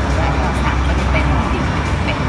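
Steady low rumble of road traffic beside a street-food stall, with indistinct voices in the background.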